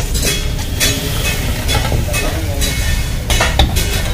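Vegetable hakka noodles stir-frying in a large steel wok: a steady sizzle, with a long metal ladle scraping and clinking against the pan every half second or so. A steady low rumble runs underneath.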